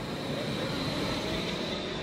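Modern electric tram running past close by: a steady rolling noise with a thin, steady high whine above it.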